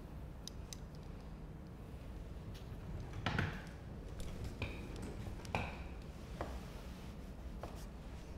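Hairdressing scissors snipping through long hair: a handful of separate short snips, the loudest about three seconds in.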